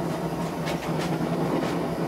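Forge running with a steady roar and low hum, with a few short metallic clicks and scrapes about a second in as hot leaf-spring steel is drawn out of it with blacksmith tongs.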